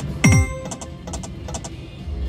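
Konami video slot machine sound effects: a loud electronic chime with a low falling tone about a quarter second in as the reels spin, then a run of quick soft ticks that fade out.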